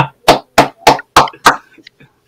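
A man laughing in a run of about six short bursts, about three a second, trailing off near the end.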